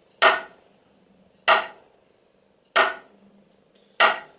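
Drumsticks striking a drum practice pad in slow, evenly spaced single strokes, four short sharp taps about one every second and a quarter. They are full wrist strokes that start and finish with the stick up, each stick rebounding off the pad.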